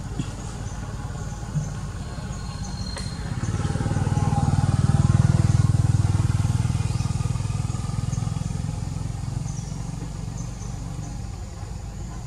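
A motor vehicle's engine passing by: a low rumble swells from about three seconds in, is loudest around five seconds, and dies away by about nine seconds, over a steady low drone.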